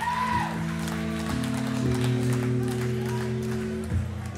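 Electric guitar and bass from a live rock band holding long, droning notes that shift pitch twice, with a crowd whooping and clapping over the first part.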